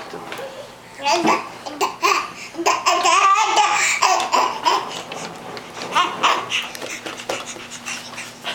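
Laughter mixed with a baby's babbling, the loudest stretch running from about one to four seconds in, with shorter bursts around six seconds.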